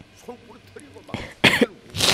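A short, harsh cough repeated twice about a second in, over faint speech underneath.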